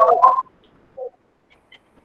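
A man's voice over a video call trailing off in the first half second, then near silence with one brief, short sound about a second in.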